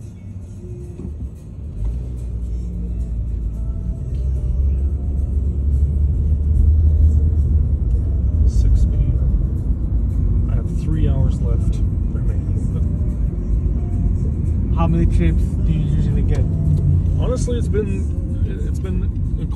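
Car cabin rumble from a moving car, building over the first few seconds as it picks up speed and then running on steadily, with music and a voice faintly over it.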